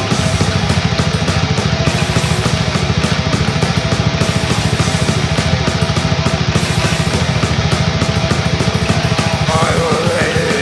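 Instrumental death metal passage: heavily distorted guitars over fast, relentless drumming, with no vocals.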